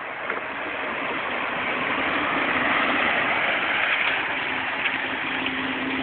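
Jeep Wrangler TJ engine running at low speed on a muddy downhill trail, growing louder as the Jeep approaches and loudest around the middle, with a steady low hum near the end.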